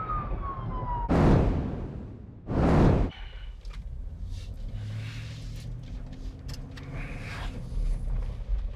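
Emergency vehicle siren wailing, its pitch falling as it winds down and stops about a second in. Two loud rushing noises follow about a second apart, then a low steady vehicle cabin hum with a few light clicks.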